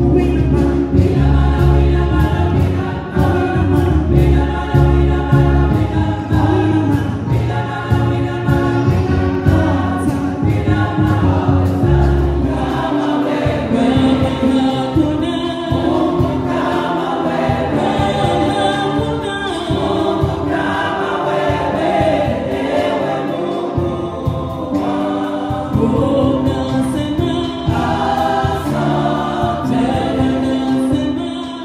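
Women's gospel choir singing through microphones, a soloist in front of the group. A deep bass part underneath drops out about twelve seconds in, leaving mostly the voices.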